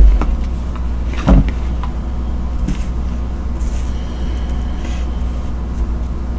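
A steady low hum throughout, with two dull knocks on the wooden tabletop, one at the very start and one just over a second in, as hands handle the tarot cards and deck box. A faint soft hiss follows later.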